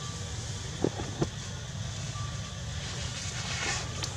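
Steady low outdoor rumble with two sharp clicks about a third of a second apart, about a second in.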